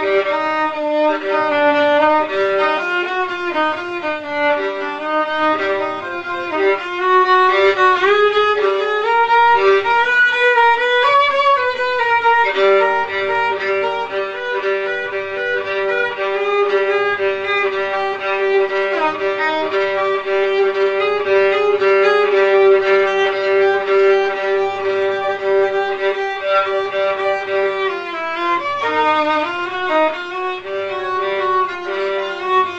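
Solo violin improvisation: a wandering melody with slides between notes, then from about twelve seconds in one long held note for most of the rest, moving off it again near the end. A soft low pulse repeats underneath about every second and a half.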